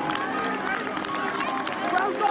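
Crowd noise: many voices at once with scattered shouts, as from football stadium spectators.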